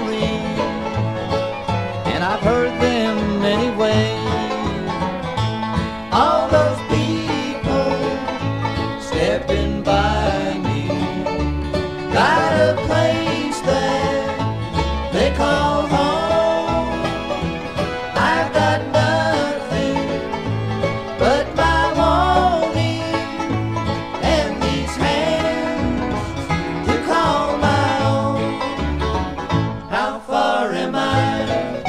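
Bluegrass band playing an instrumental break: banjo and guitar over a steady plucked bass line, with a lead line that slides between notes.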